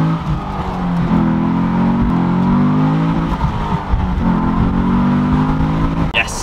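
V8 engine of a 2004 Cadillac CTS-V, the 5.7-litre LS6, heard from inside the cabin as a steady droning pull under acceleration. The drone drops away and returns a few times.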